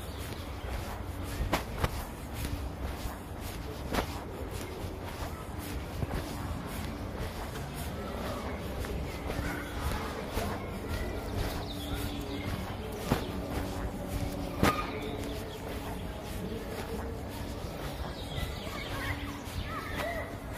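Footsteps of a person walking in sneakers on an asphalt path, with a few sharper knocks now and then and a steady low rumble on the phone's microphone.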